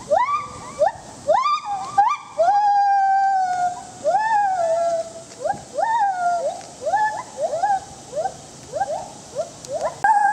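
Gibbon song: a run of rising whooping calls, one or two a second, several sliding back down after the peak, with one longer held note about three seconds in.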